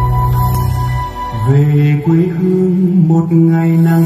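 Music for a stage dance performance. A low held drone runs for the first second. From about a second and a half in, a line of long held low notes steps up and down in pitch.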